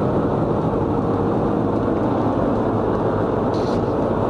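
Steady road noise inside a car's cabin at motorway speed: tyre and wind noise over a low engine hum, windows closed.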